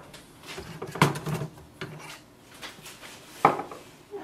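Plastic clicks and light knocks from ink cartridges being handled at an HP Envy 6400e printer's cartridge carriage, with a sharper click about three and a half seconds in.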